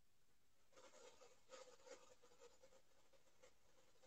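Near silence, with faint intermittent scratching and rustling starting about a second in and fading out before the end.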